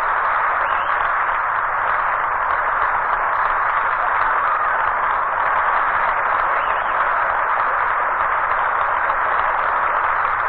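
Studio audience applauding steadily after a song, heard through a narrow-band old radio recording.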